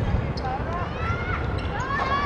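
Young voices calling and shouting across a football pitch during play: several short rising-and-falling calls, with a longer one near the end, over steady outdoor background noise.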